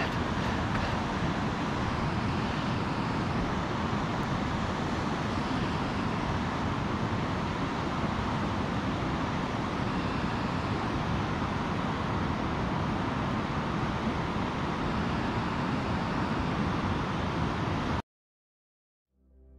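Steady rush of a fast-flowing river with rapids.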